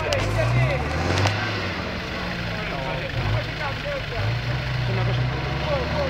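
Nissan King Cab pickup's engine revving up and down as the truck drives through deep mud, with spectators' voices over it. A single sharp knock about a second in.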